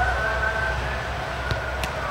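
A distant siren holding a steady, slightly wavering high tone over a low city rumble. Two sharp smacks of a football come near the end.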